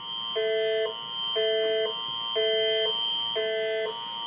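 The Canadian Alerting Attention Signal that opens a British Columbia emergency alert test, received off an FM broadcast. A steady high tone holds under two chords that alternate about every half second, a higher pair and a lower pair, four times over.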